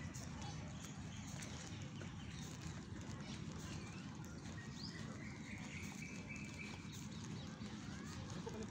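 Outdoor park ambience: a steady low rumble of wind and movement on a phone microphone while walking on grass, with faint high bird chirps and a thin held whistle in the second half.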